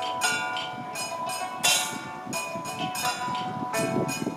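Traditional Taoist ritual music: a sustained, steady melodic line with metallic crashes, like cymbals or bells, about every one and a half seconds.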